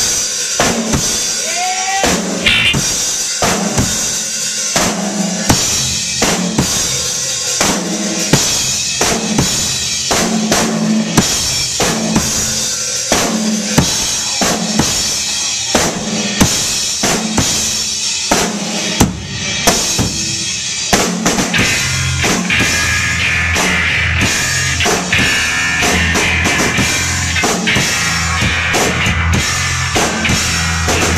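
Live noise-rock band starting a song: a loud drum-kit beat with kick and snare and intermittent bass notes, then about two-thirds of the way through the full band comes in with heavy, distorted guitar and bass under the drums.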